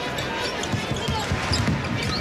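A basketball being dribbled on a hardwood court, a steady run of low bounces several times a second, over the steady murmur of an arena crowd.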